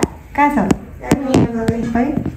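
A person's voice in short bits of speech, with several sharp clicks or knocks in between.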